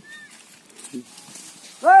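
Quiet outdoor background with a faint, short, steady chirp near the start, then a loud shouted exclamation, "Arey!", near the end.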